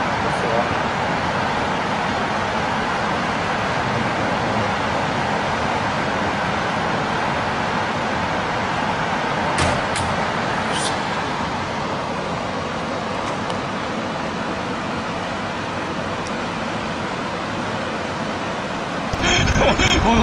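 Steady rushing noise of tsunami floodwater surging through a pine forest and down a street, with a few sharp cracks about ten seconds in. A louder, choppier sound takes over just before the end.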